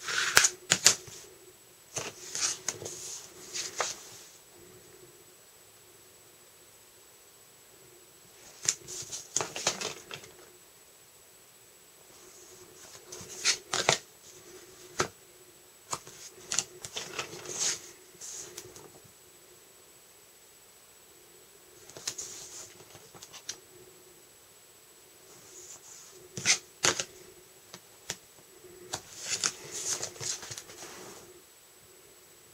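Quarter-inch double-sided tape being pulled off its roll and pressed along the edges of a sheet of cardstock: short spells of tape and paper handling noise every few seconds, with quiet gaps between.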